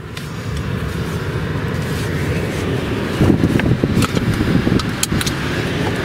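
Low, uneven rumble in the cabin of a parked car with its engine running, getting louder about three seconds in, with a few light clicks.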